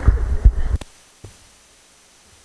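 Handling noise from a handheld microphone: low thumps and rumble as it is lowered, ending in a sharp click just under a second in.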